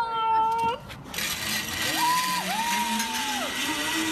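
A zipline rider's long high-pitched cry, broken once in the middle, over a steady rushing hiss and a low hum that slowly rises in pitch.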